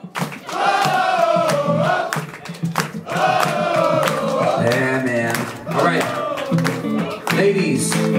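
Men in a concert audience singing a wordless 'oh, oh, oh' chorus together in long gliding phrases, backed by the band's electric guitar and a steady beat of hand claps.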